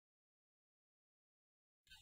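Dead silence on the audio track, then a choir's singing cuts in suddenly just before the end.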